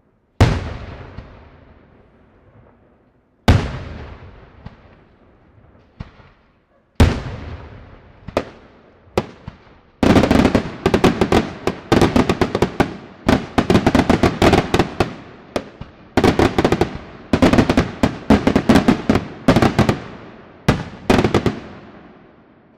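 Daytime aerial fireworks shells bursting. Three single loud bangs come about three seconds apart, each with a long echoing tail and a few smaller pops after it. From about ten seconds in, a dense barrage of rapid bangs and crackle follows without a break.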